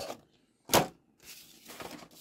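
One short rustle of a clear plastic blister pack being handled, about three-quarters of a second in. Otherwise very quiet.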